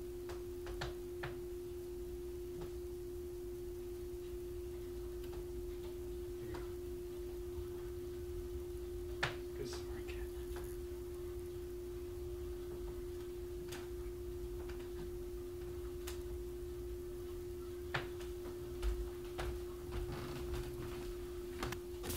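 A steady low hum held at one pitch, with a few faint clicks and taps scattered through it.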